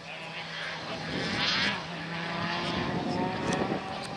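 Audi Sport Quattro S1 rally car's turbocharged five-cylinder engine running at steady revs, dropping to a lower pitch about two seconds in, with a brief hiss about one and a half seconds in.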